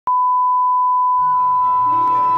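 Steady, unbroken test-tone beep, the line-up tone that goes with television colour bars. Music comes in beneath it just over a second in.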